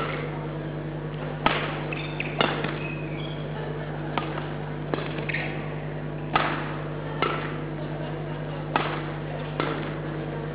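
Badminton rackets striking a shuttlecock back and forth in a rally: a sharp hit about once a second, about nine in all, with short squeaks between them, over a steady low hum.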